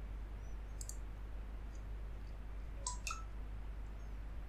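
A few faint computer mouse clicks, one about a second in and two close together near the end, over a low steady electrical hum.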